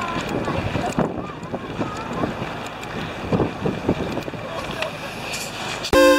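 Wind buffeting the camera's microphone in uneven gusts, with indistinct voices in the background.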